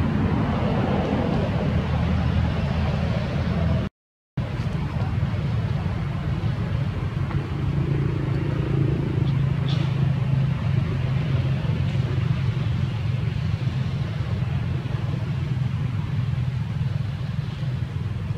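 Steady low rumble, with the sound cutting out completely for about half a second around four seconds in.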